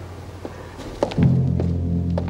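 Footsteps of shoes on a hard floor at a steady walking pace. A little over a second in, low sustained music comes in and holds under the steps.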